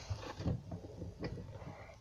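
Quiet room with faint movement noise: soft rustling and a few light taps as hands move around over a table.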